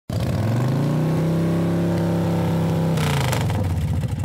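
An engine sound effect: the engine's pitch rises over the first second and holds steady. About three seconds in it drops away with a burst of hiss, like a vehicle speeding past.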